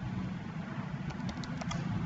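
A few computer keyboard keystrokes, scattered single clicks, as a handful of characters are typed. Under them runs a steady low hum.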